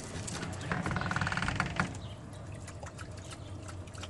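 A sliding glass patio door rolling along its track: a rattling rumble lasting about a second, starting just under a second in.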